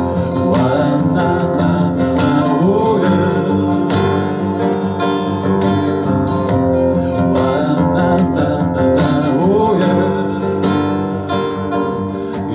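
Acoustic guitar strummed in a steady rhythm, an instrumental passage of a song.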